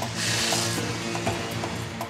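Handheld abrasive cut-off saw grinding through a steel rail, a harsh hiss in the first second. Steady background music plays underneath.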